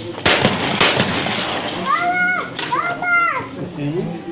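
Two shotgun shots about half a second apart, the loudest sounds here, followed by two drawn-out shouted calls.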